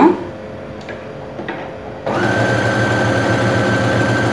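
Electric domestic sewing machine stitching through cloth. It starts about halfway through and runs at a steady speed with an even hum and a thin high whine.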